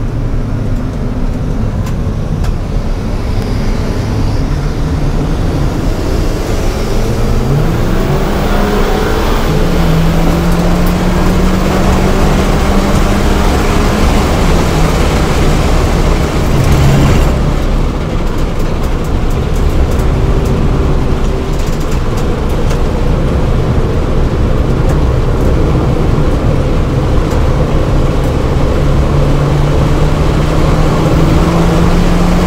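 VW GTI MK5's turbocharged 2.0-litre four-cylinder engine under hard acceleration, heard from inside the cabin over loud wind and road noise. The engine note rises as the car gathers speed, then drops away suddenly about seventeen seconds in as the throttle lifts to brake for a corner.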